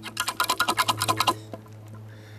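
A shot-up laminated steel padlock rattling against its hook as it is jiggled by hand: a fast run of metal clicks, about ten a second, that stops about a second and a half in. The shackle is still locked.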